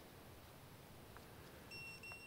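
A drone-finder piezo buzzer (VIFLY Finder Mini) on a racing quad gives one short, high-pitched steady beep near the end; before that there is near silence.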